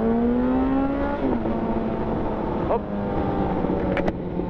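Yamaha FZ1's inline-four engine pulling with a steadily rising pitch for about a second, then dropping and running steadily at lower revs, under constant wind noise on the mic.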